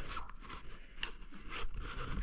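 Light, irregular crunching and scraping of dry twigs and leaf litter underfoot, a handful of small crackles spread through the moment.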